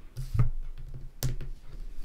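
Hands picking through a fanned spread of Lenormand cards on a cloth-covered table. The cards rustle lightly, with two sharp taps, one about half a second in and one a little over a second in.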